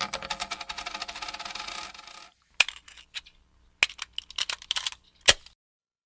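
Small metal pieces spilling and clinking onto a hard surface. A dense, ringing rattle lasts about two seconds, then comes a handful of separate clinks as they settle.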